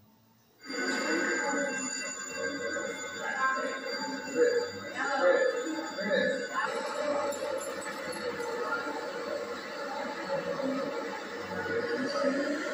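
Soundtrack of an old camcorder tape played back through a TV speaker, starting about half a second in: indistinct voices and some music, with a thin steady high whine from the playback.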